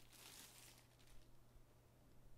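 Near silence: room tone with a faint low hum, and a faint brief rustle of a plastic bag just over a second in.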